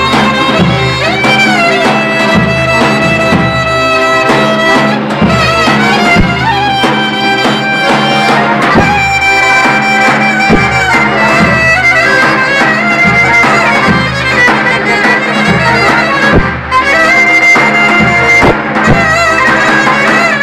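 Live clarinet and accordion music: the clarinet leads a melody with wavering held notes and quick ornamental runs over the accordion's steady pulsing bass and chords.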